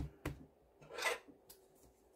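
Faint handling noises: a soft knock, a second knock just after, then a short scratchy rub about a second in, as hands move over the gel polish bottles and the paper-towel-covered tabletop.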